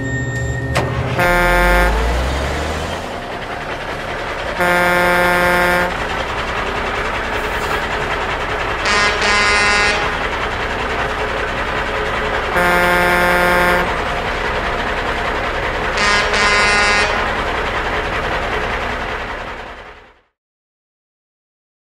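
Truck horn sounding over a continuous engine noise: a short blast about a second in, longer blasts around five and thirteen seconds, and quick double honks around nine and sixteen seconds, with everything fading out at the end.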